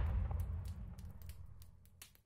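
Tail of a boom sound effect: a low rumble with faint crackles, dying away over the first second and a half to silence.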